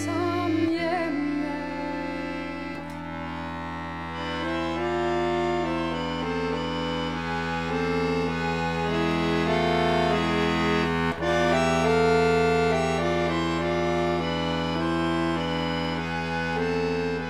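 Accordion playing a slow Norwegian folk hymn tune: a melody of held notes moving step by step over sustained bass notes, with a brief break about eleven seconds in.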